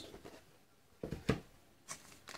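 A few light knocks and taps from handling an emptied cardboard trading card box, two close together about a second in and one more near the end.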